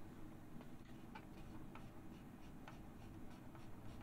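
Quiet room tone with a low hum and a few faint, irregular clicks.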